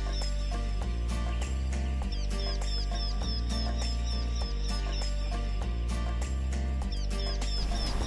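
Background electronic music with a steady beat, low sustained bass notes that change every second or so, and short high notes repeated at an even pace.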